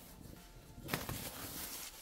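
Plastic cling film and a cloth tea towel rustling as they are pulled off a bowl of risen dough; a soft rustle that grows louder about a second in.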